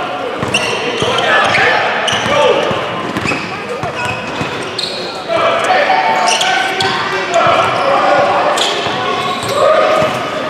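A basketball being dribbled on a hardwood gym floor during a game, with repeated sharp bounces amid players and spectators calling out.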